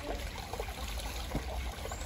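A shallow woodland stream trickling over stones, with one soft tap a little past the middle.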